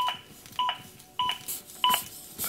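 ZOLL AED Plus defibrillator's built-in CPR metronome beeping steadily, four short even beeps in two seconds, pacing the chest compressions at about 100 a minute.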